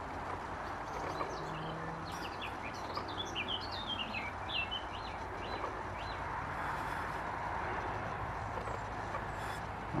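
A small songbird singing a quick run of high whistled notes, about two to five seconds in, over a steady low outdoor rumble.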